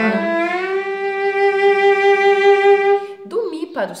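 Bowed cello on the A string sliding up in a glissando from B in first position to E in fourth position with the same finger, about half a second in. The E is then held for about two and a half seconds.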